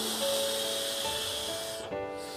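A long draw on a Sikary OG vape with its disposable mesh tank: a steady hiss of air pulled through the mouthpiece and coil for about two seconds, cutting off just before the end. Soft piano music plays underneath.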